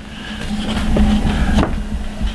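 Paper rustling and handling noise from a large mounted photograph being held up and shifted about, with a sharper scrape about one and a half seconds in.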